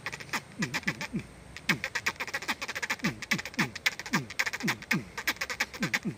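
A man imitating an animal call with his voice through a cupped hand: a quick run of short calls, about three a second, each dropping in pitch, with sharp clicks between them.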